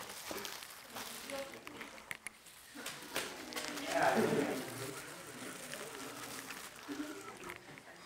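Faint, indistinct voices murmuring in a room, with light crinkling and small clicks from a clear plastic bag being handled.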